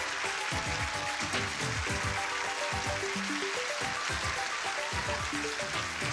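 Game-show theme music with a steady drum beat and a short melody, over a continuous hiss of studio-audience applause.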